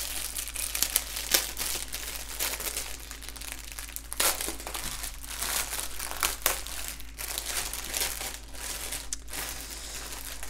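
Clear plastic wrap around a bundle of small bags of diamond painting drills crinkling as hands handle it and pull it open. It is a continuous crackle broken by frequent sharper, louder crinkles.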